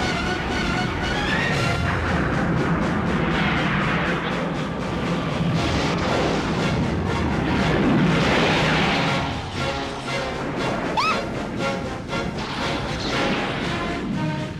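Film score music mixed with sci-fi battle sound effects: energy-weapon blasts and explosions, with a short rising tone about eleven seconds in.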